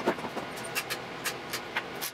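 A series of small, sharp metal clicks as a hex key works an adjustment screw on a laser mirror mount.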